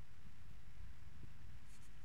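Quiet outdoor background between sentences: a low, steady rumble with a faint hiss and no distinct events.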